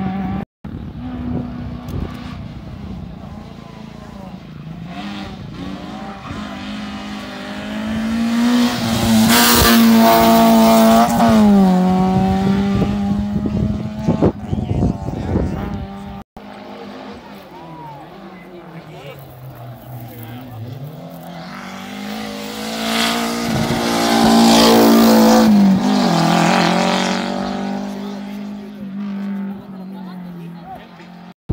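Rally cars on a tarmac stage, one after another, running hard towards the microphone and past. Each engine climbs in pitch to a loud high-revving peak, at about ten and again about twenty-five seconds in, then drops as the driver comes off the throttle.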